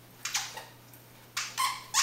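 A small Papillon-mix dog playing with a toy on its mat: three short high squeaks, the last two closer together near the end.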